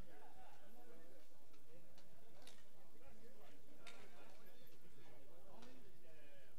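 Background voices of players and spectators, with two sharp clacks of bike polo mallets about two and a half and four seconds in.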